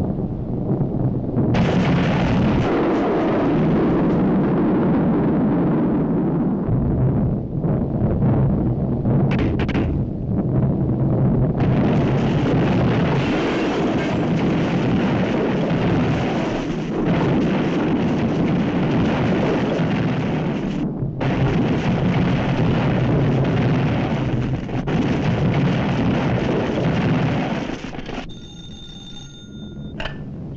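Cartoon sound effects of a comet crashing to Earth: a long, loud rumble of explosions and crashing debris over orchestral score. Near the end it gives way to a telephone ringing.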